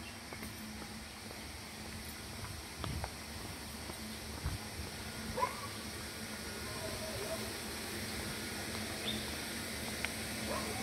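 Wild birds giving a few short chirps, about halfway through and again near the end, over a steady background hiss. A couple of footsteps thud on a concrete path a few seconds in.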